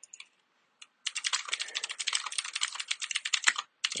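Rapid typing on a computer keyboard: a few faint key clicks, then about a second in a fast, continuous run of keystrokes lasting nearly three seconds.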